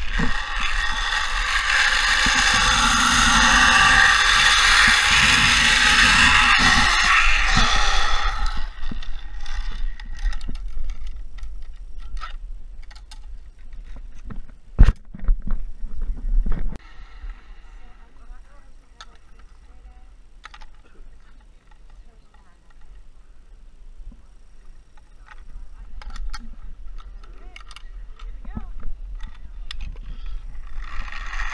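Zipline trolley pulleys running along a steel cable with wind rushing past, a loud whir that drops in pitch and fades about eight seconds in as the rider slows to a stop. This is followed by scattered sharp clicks and a couple of loud knocks, the loudest about fifteen seconds in.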